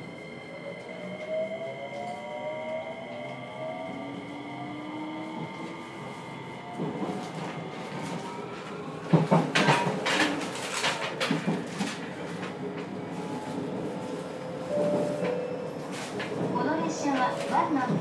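Traction motor whine of a JR Kyushu 303 series EMU with Hitachi IGBT VVVF inverter, heard inside the motor car: several tones climb in pitch over the first few seconds as the train accelerates, over steady rolling noise. From about nine seconds in come louder sharp knocks.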